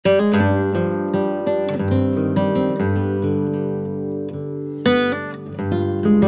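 Background music: acoustic guitar playing plucked notes and chords, with a strong chord struck just before the five-second mark.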